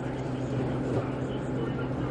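Steady low hum of a frozen margarita machine running while a slushy drink is dispensed from its tap into a plastic cup.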